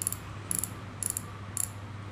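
Daiwa Certate 3000 spinning reel clicking as it is worked by hand: four short bursts of ratchet-like clicks, about half a second apart.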